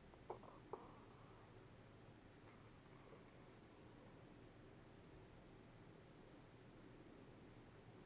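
Near silence: two faint light taps within the first second as card stock is handled on a table, and a faint dry paper rustle a couple of seconds later.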